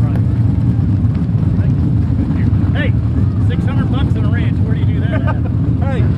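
Steady low rumble of race car engines running, with people's voices talking and calling over it from a couple of seconds in.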